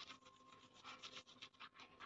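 German Shepherd puppy gnawing and tugging at a leash strap knotted around a bed leg, working at the knot: faint, irregular rubbing and scratching of the strap in its teeth.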